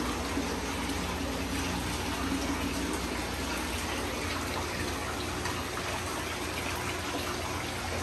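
Steady rush and splash of water from running aquarium filters and pumps, with a low steady hum underneath.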